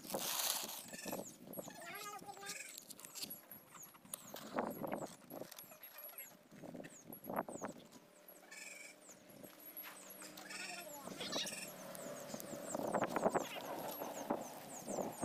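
Paper being crumpled and pushed under a grate of raw cashew nuts, then a match struck and the paper and dry leaves catching fire, the fire getting louder near the end. Faint high chirping runs throughout.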